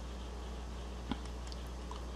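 A low steady hum with a single faint click a little after a second in.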